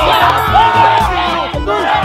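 A group of people shouting and yelling in excitement, one voice holding a long cry about half a second in, over background music with a steady bass.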